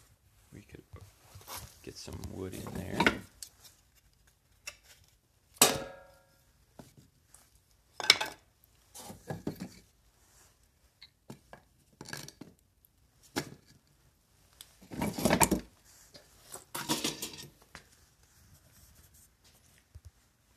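Irregular clatter and knocks of hard objects being handled, in separate bursts with quiet gaps; one knock about six seconds in rings briefly like metal.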